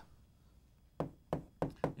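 Chalk striking a chalkboard while "x =" is written: four short, sharp taps, starting about a second in.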